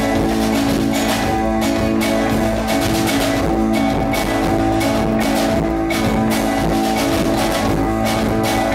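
Live band playing an instrumental passage: acoustic guitar with bowed cello holding long notes over a steady drum beat, with no singing.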